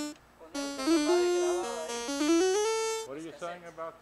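The Casio keyboard built into a Fisher SC-300K boombox sounding a short melody of held electronic notes that step up and down in pitch, ending on a higher note and stopping about three seconds in. A man's voice follows.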